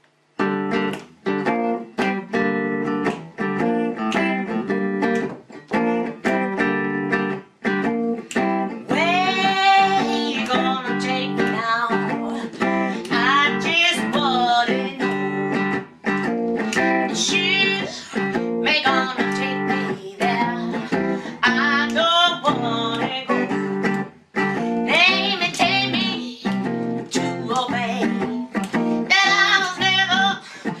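Guitar played through a small amplifier, picking a repeated blues riff, with a higher melody line of gliding notes joining about nine seconds in.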